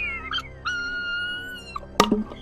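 Background music under a high-pitched wail that is held for about a second and falls slightly in pitch. A sharp, loud knock comes at the very end.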